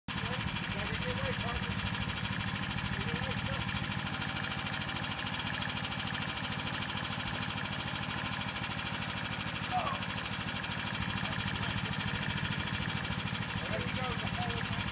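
Small engine running steadily at a constant speed, with faint voices calling now and then.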